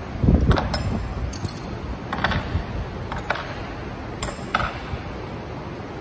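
Metal wrenches clinking as they are laid back into a toolbox drawer: about seven separate sharp clinks, well spaced, with a dull knock just at the start.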